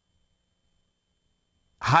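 Near silence, then a man's voice resumes speaking near the end.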